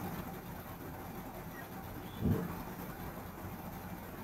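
Steady low background hiss and hum of a desk microphone, with one short low voice sound, a mumbled syllable, a little over two seconds in.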